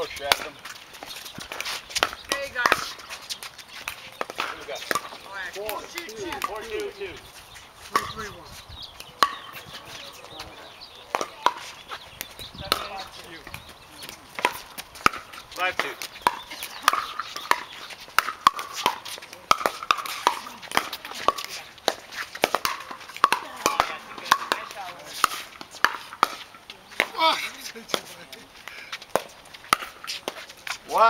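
Pickleball paddles hitting a hard plastic ball during a rally: a long run of sharp pops at irregular intervals.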